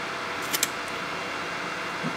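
Diode laser engraver running while it marks steel: a steady whir from the laser module's cooling fan, with two faint ticks about half a second in.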